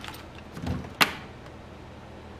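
A soft low thump, then one sharp knock about a second in, from small objects being moved about while someone rummages for a part, over a steady low hum.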